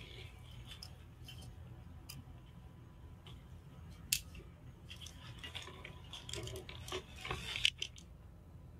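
A steady low hum of the space station's cabin ventilation, with scattered light clicks and rustles of handling close to the microphone. The rustling grows busier in the last three seconds, with one sharp click about four seconds in.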